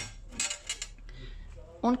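A few light, sharp clinks and taps from hard objects being handled, clustered in the first second.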